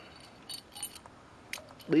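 Steel corner brackets clinking against each other as they are picked up off a concrete floor: a few light metallic clinks, about half a second in, near one second and again at about a second and a half.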